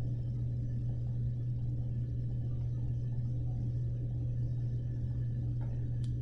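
A steady low electrical hum with faint background noise and no speech.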